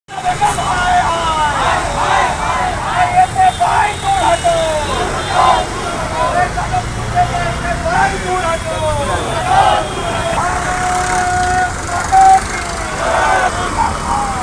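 Protest crowd shouting slogans in raised, high-pitched voices, phrase after phrase, with a few longer held shouts near the end. Street traffic runs underneath.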